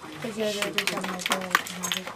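People talking, with a few short clicks or taps, the sharpest about one and a half seconds in.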